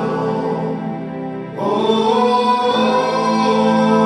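A group of male voices singing a sustained a cappella harmony live, holding long chords; the sound dips briefly, then a fuller, louder chord comes in about one and a half seconds in.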